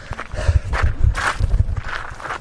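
A man breathing hard in heavy, repeated gasps, about one every half second or so, worn out from a long climb up stone steps, over low thumps of footsteps.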